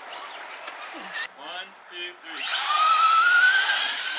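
Electric motor and drivetrain of a Traxxas Rustler RC truck whining at full throttle, the high whine climbing slowly in pitch as the truck accelerates across the pavement.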